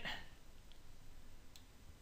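Quiet room tone with two faint clicks about a second apart, from the computer's mouse or keys being worked.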